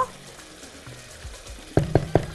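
Tomato sauce simmering in a pot on the hob, a soft steady sizzle, with a spoon stirring it and a couple of sharp knocks near the end.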